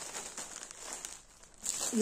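Sheet of metallic gift-wrapping paper rustling and crinkling as it is lifted, turned over and laid flat on a counter, in irregular bursts that die down about a second and a half in.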